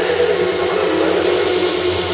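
Psytrance track in a breakdown: a white-noise sweep swells in the highs over held synth notes that step down in pitch, above a steady low drone.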